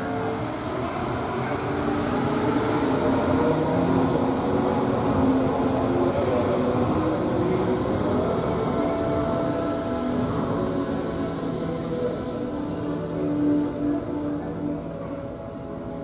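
Disney Resort Line monorail train running past at close range: a steady rolling rumble that swells over the first few seconds, with a motor whine that rises in pitch about halfway through.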